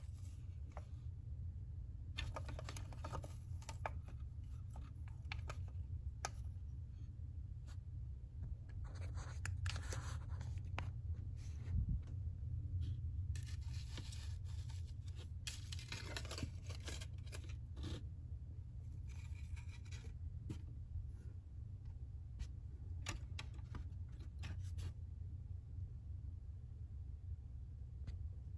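Small objects being handled and set down: rustling, scraping and light clicks of stones and crystals placed on a moss-lined tray, in scattered spells over a steady low hum.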